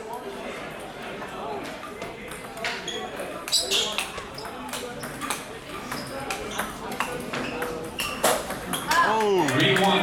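Table tennis rally: the celluloid ball clicks sharply off the rubber paddles and the table, several strikes a second, over background chatter. Near the end, as the point finishes, a voice calls out with a rising and falling exclamation.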